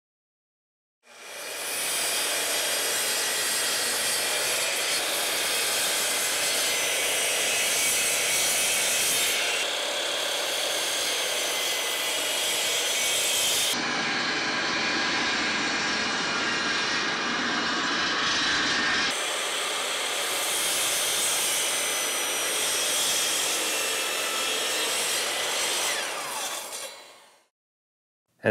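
Bosch GCM12SD 12-inch sliding miter saw running and cutting through wood while a shop vacuum draws the dust through its collection chute. The sound is steady and changes abruptly a few times along the way.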